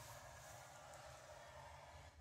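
Faint, steady scratch of a scoring stylus drawn along the groove of a paper scoring board, pressing a fold line into scrapbook paper.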